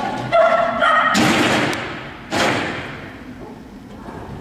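A brief pitched call, then two loud thuds about a second apart, each followed by a short echo in a large hall.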